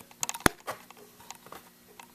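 Handling noise from a hand-held camera being moved and set down: a quick run of clicks and knocks with one sharp click about half a second in, then a few faint ticks and rustles over a faint steady hum.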